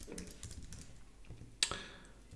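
Typing on a computer keyboard: soft, scattered keystrokes, with one sharper, louder click about one and a half seconds in.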